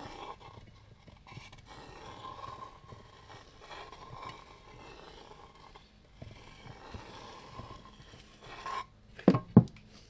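Soft, irregular rubbing and scraping of fingers smoothing wet acrylic paint around the edges of a canvas. Near the end come two short, loud coughs.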